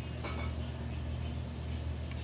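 Steady low hum of room tone, with one brief faint sound about a quarter second in.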